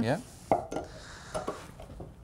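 Steel straight-claw hammer knocking against the nail and wood as its claw is set under a nail to pull it. There is one sharp click about half a second in and a few fainter knocks later.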